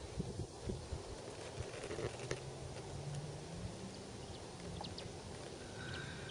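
Quiet outdoor field ambience with a faint steady hiss and a few faint ticks. A faint low hum comes in about two seconds in, rises slightly in pitch and fades out about three seconds later.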